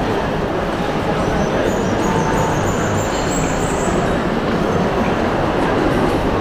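Steady background noise of a busy indoor shopping mall: crowd murmur over a constant low rumble. A faint high whine rises slowly from about one and a half to four seconds in.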